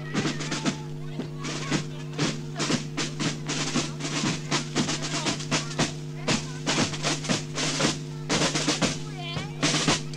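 Marching band drum corps playing snare and bass drums in a steady rhythm of sharp strokes, with short rolls. A constant low hum runs underneath.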